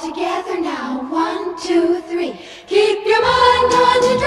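Music: a chorus of girls' voices singing a line together on a 1959 pop record, with the bass and drums dropped out under them. The full band comes back in about three seconds in.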